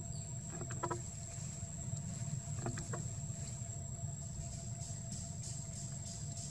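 Outdoor forest ambience: a low steady rumble with a steady high-pitched insect whine over it, broken by two pairs of short calls, one less than a second in and one near the three-second mark.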